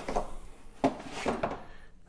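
A few light knocks and scrapes from a moulded paper-pulp packaging tray being handled while a small plastic cleaning tool is pulled out of it.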